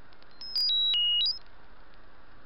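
A short electronic beep melody lasting about a second, a little way in: clean tones stepping down in pitch in four steps, then quickly back up. A few faint ticks come just before it.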